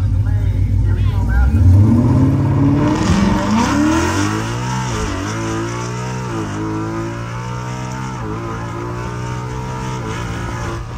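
Ford Mustang's engine under hard acceleration, heard from inside the cabin on a drag-strip pass: a low rumble gives way about a second and a half in to revs climbing steeply. The revs drop at each upshift, about five, six and a half and eight seconds in, and climb again after each.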